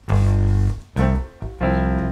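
Electric keyboard playing three held notes, each about half a second long, with short gaps between them.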